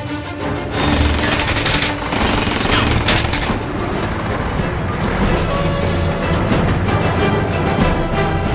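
Action-film soundtrack mix: orchestral score music over the low rumble of a moving train and heavy machinery, with sharp metallic bangs scattered through it.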